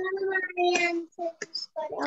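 Children's voices speaking over one another on a video call.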